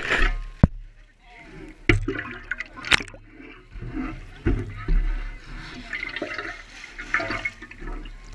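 Water sloshing and gurgling around a shovel-mounted camera as the shovel blade is plunged under river water, with a few sharp knocks in the first three seconds.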